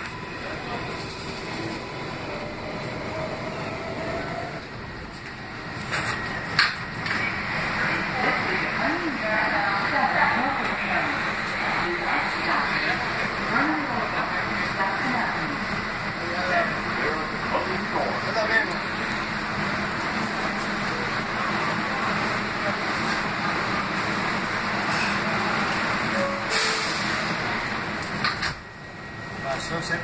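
Running noise heard inside a moving Kawasaki R188 subway car, mixed with the chatter of passengers. The noise drops off briefly near the end.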